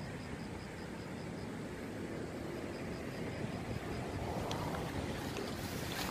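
Steady outdoor background noise with some wind on the microphone, and a faint, high-pitched chirp repeating evenly about four times a second. A single light click comes about four and a half seconds in.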